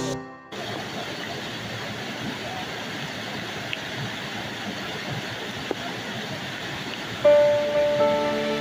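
Steady rush of a small waterfall cascading over layered rock in a gorge. Background music fades out at the start and comes back in near the end.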